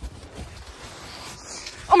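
Rustling and shuffling of snow and clothing as someone struggles up out of deep snow and falls forward, ending with a sudden loud, rising cry of 'Oh'.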